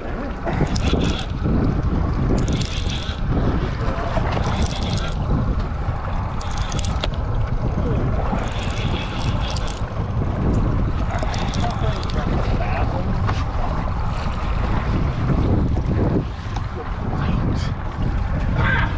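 Wind buffeting the microphone on an open boat at sea: a loud, steady low rush, with a short hiss every two seconds or so.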